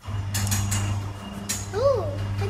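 A steady low hum, with a few light knocks and a brief rising-and-falling voice sound near the end.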